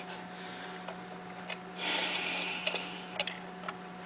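A faint steady low hum with a few light clicks and a short hiss about two seconds in.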